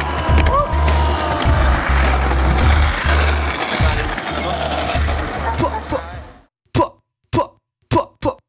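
Rap instrumental beat with heavy bass pulses, fading out about six seconds in; then four short, clipped sound bursts near the end.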